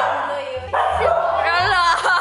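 Husky giving excited high yips and whines, several rising in pitch in the second half.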